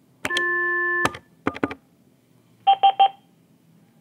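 Avaya 1416 desk phone placing an intercom page: a key click, a steady tone lasting under a second, a few more key clicks, then three quick beeps about two-thirds through as the page channel opens.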